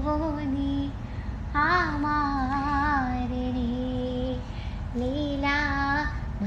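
A boy singing a Malayalam song unaccompanied, holding long ornamented notes that waver up and down, with short breaths about a second in and just before five seconds.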